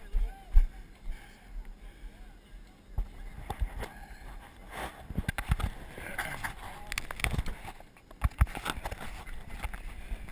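Handling noise on a handheld action camera: a constant low wind rumble on the microphone with irregular knocks and rubbing as the camera is carried and turned around, loudest in the middle seconds, and faint voices of other people in the background.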